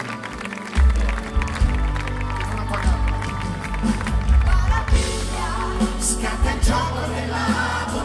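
A rock band playing live through a PA, recorded from within the audience; the bass and drums come in heavily just under a second in and the full band plays on, with some crowd cheering underneath.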